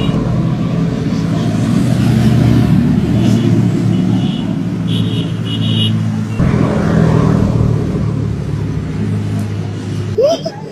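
Car driving up close and pulling over at the roadside: a steady, loud low engine and road rumble, with a few short high squeals in the middle as it slows.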